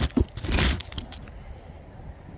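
Handling noise on a phone's microphone as it is moved: a sharp click and a short burst of rustling within the first second, then faint background hiss.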